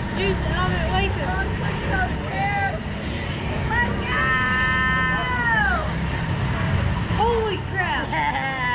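Wordless voices over a steady low rumble. About four seconds in, one long held vocal call sounds for roughly two seconds, then falls in pitch as it trails off.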